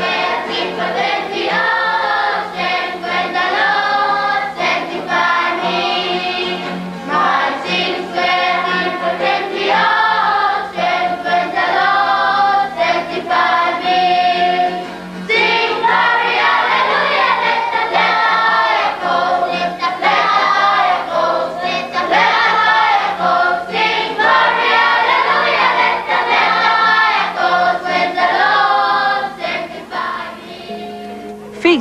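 Children's choir singing together to acoustic guitar accompaniment, with a short break about halfway through.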